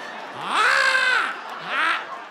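A woman's long, high-pitched strained squeal of effort as she struggles to pull a far-too-tight dress on. It rises, holds for about a second and falls away, and a shorter, fainter one follows near the end.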